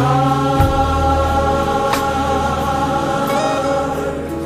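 Gospel choir holding a long sustained chord over a band with bass, with a couple of brief percussion hits.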